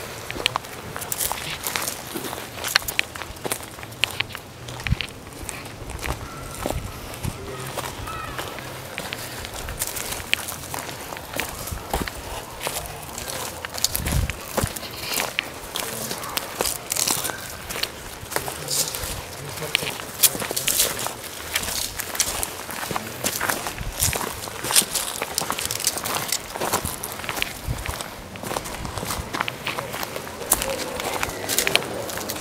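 Footsteps crunching and crackling through dry leaf litter and twigs on a woodland floor, an irregular run of sharp crackles from people walking.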